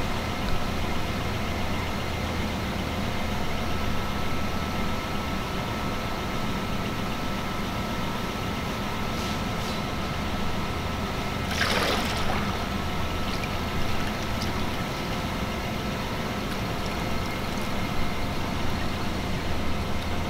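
Steady low machine hum with a brief water splash about halfway through, as a painted hard hat is pushed through the floating print film and down into a hydrographic dip tank.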